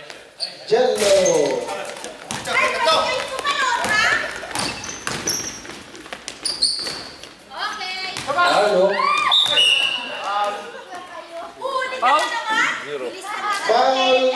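A basketball game in a large, echoing gym: players calling out and shouting to each other over the ball bouncing on the court floor.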